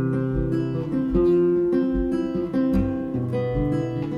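Instrumental passage of a country-rock song: acoustic guitar strummed over a steady low beat, with no singing.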